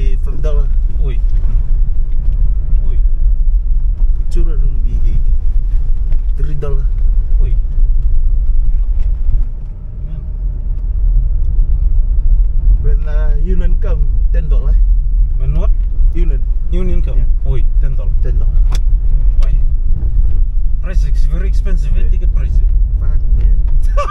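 Car driving along a road, heard from inside the cabin as a steady low rumble of engine and road noise, which eases briefly about ten seconds in. Voices talk indistinctly now and then over it.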